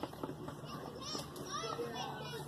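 Children's voices calling and talking, high-pitched and a little distant, with short bursts about halfway through and again near the end.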